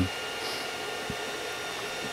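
Creality 3D printer running a print: a steady, even whir from its fans and motors, with faint steady tones above it.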